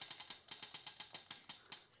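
Spinning prize wheel's pointer ticking against the pegs on the rim, a run of faint clicks that get slower and farther apart as the wheel winds down, stopping near the end.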